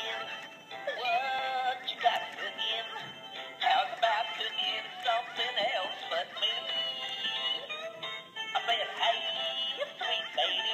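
Animated plush turkey toy singing a song with backing music through its small built-in speaker, in phrases with short breaks.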